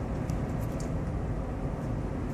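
Steady road noise inside the cabin of a 2015 Toyota 4Runner under way: tyre and drivetrain hum with its 4.0-litre V6 running at light throttle, mostly a low rumble.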